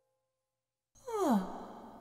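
A voiced sigh about halfway through: a breathy sound that glides down in pitch and trails off.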